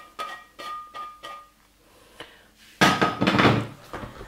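Frying pan being emptied with a kitchen utensil: several light knocks on the pan, each with a short ringing tone, in the first second and a half, then a louder clatter about three seconds in.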